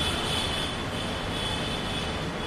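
Steady outdoor city background noise: a continuous hiss and low rumble, with a faint high-pitched tone that fades in and out.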